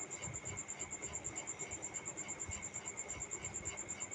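A steady, high-pitched chirping made of rapid, evenly spaced pulses, insect-like, that keeps on without a break.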